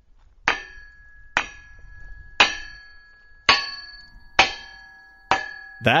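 Six clanking strikes on the steel U.S.–Mexico border wall, about one a second, each ringing out with a metallic tone that fades before the next.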